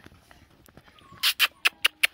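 Faint whining from dogs, then, in the second half, a quick run of sharp crunching clicks in snow.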